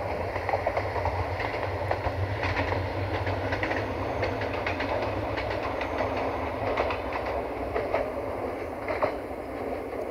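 Siemens Desiro VT642 diesel multiple unit running past with a steady low diesel rumble, its wheels clicking irregularly over the rail joints. It gets slightly quieter near the end.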